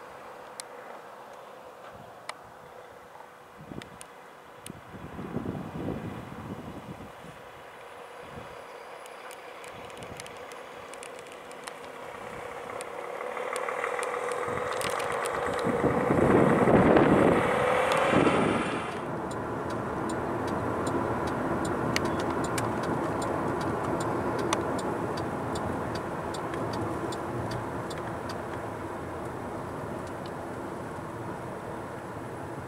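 Wind buffeting the microphone, then a road vehicle passing close by on a highway. Its noise builds for several seconds and peaks with a falling pitch about 17 seconds in, then gives way to a steadier, quieter road rumble.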